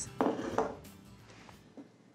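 A utensil knocks once against a glass baking dish as blueberry pie filling is spooned in, followed by a few faint scrapes and taps.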